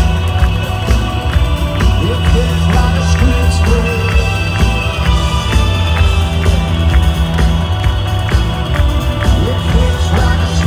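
A live rock band plays loudly through a festival PA, with electric guitars, a heavy bass line and a steady, driving drum beat. It is heard from within the crowd.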